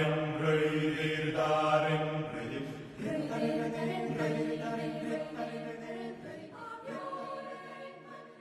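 A choir singing slow, sustained chords that change a few times and gradually fade out.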